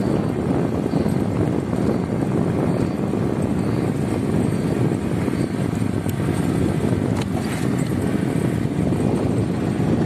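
Steady rumble of a car driving slowly along an unpaved dirt road, with road and wind noise heard from inside the vehicle.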